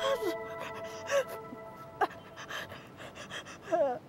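A woman's pained gasps and panting breaths with short falling moans, the loudest near the end, over a sustained music chord that stops about halfway through.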